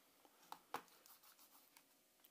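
Faint handling noise of a rubber-armoured Blackview BV6000 rugged smartphone being held and shifted on a tabletop, with two small clicks in quick succession about halfway through.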